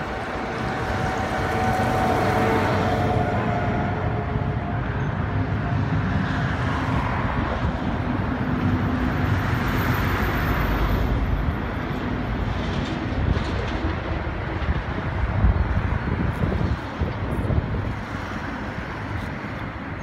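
Steady low rumble of motor vehicle noise, with a faint whine over it for the first few seconds.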